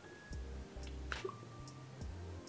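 Lips and a tinted lip oil applicator making a few faint wet clicks and a small smack, the sharpest a little over a second in, as the oil is spread on the lips.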